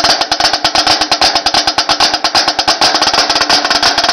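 Marching snare drum played in a fast, unbroken run of sharp strokes, more than a dozen a second: a snare player's chops.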